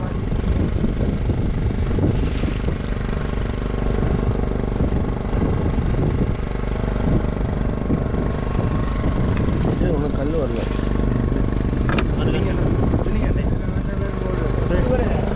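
Steady drone of a fishing boat's motor running at an even pitch, with short bits of crew talk.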